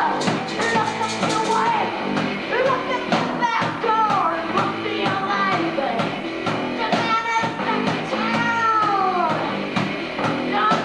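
A punk band playing live: a singer sings into a microphone over distorted electric guitar, bass guitar and drums.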